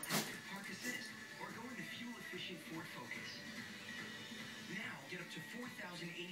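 A television playing in the background, with a voice talking over music. A short, sharp noise right at the start.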